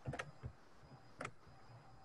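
Faint clicks of computer keys as a lasso selection of sketches is cut away with Ctrl+X: a quick cluster at the start and a single click a little over a second in.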